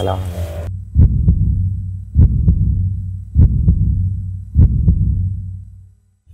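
Heartbeat sound effect: a slow, even lub-dub of paired low thumps, about one beat every 1.2 seconds, fading out near the end.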